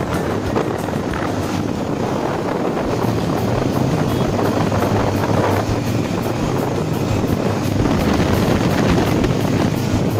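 Steady rush of wind and engine drone from riding a motorcycle at speed on a highway.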